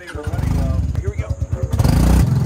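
Small engine of a land-driving jet ski running rough with a fast low pulsing, getting louder toward the end as it is throttled up. It has just stalled and is not running well.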